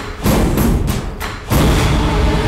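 Dramatic soundtrack of heavy percussion hits: one just after the start and a louder one about a second and a half in, which leads into the theme music.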